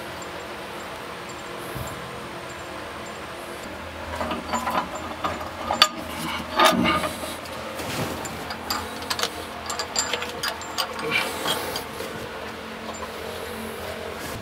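Irregular metallic clinks and knocks of bolts and fittings being handled at the steam pipe flange inside a steam locomotive's smokebox, starting a few seconds in and dying away near the end, over a steady low background hum.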